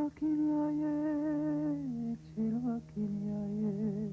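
A voice humming a slow melody of long held notes with a slight waver, stepping down in pitch about two seconds in, over a steady low tone.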